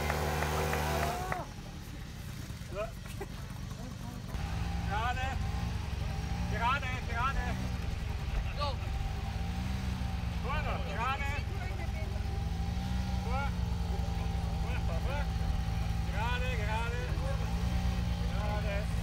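Small engine of a children's mini quad running at low revs as it creeps along, its pitch rising and falling gently with the throttle. A louder engine sound breaks off about a second and a half in, and voices, including children's, are heard in the background.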